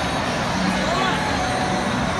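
Ballpark crowd hubbub: a steady din of many overlapping voices and chatter, with no distinct single event standing out.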